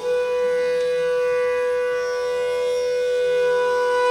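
Bansuri bamboo flute holding one long, steady note.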